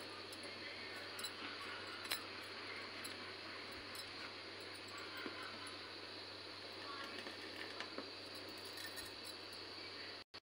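Faint stirring of hot milk in an aluminium kadai: a steel spoon gives a few light clicks against the pan over a steady low hiss and hum.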